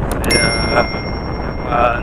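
Subscribe-button animation sound effect: a couple of quick mouse clicks right at the start, then a single bright notification-bell ding that rings on for about two seconds. Wind rush on the microphone and motorcycle running noise continue underneath.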